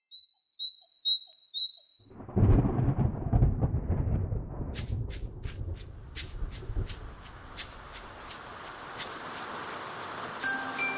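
Storm sound effects: a few short high chirps, then a roll of thunder about two seconds in that rumbles for several seconds and fades. Rain follows, a growing hiss with sharp drop ticks.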